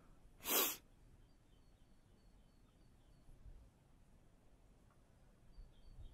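A single short, sharp breath through the nose from the person holding the camera, about half a second in; the rest is faint outdoor background.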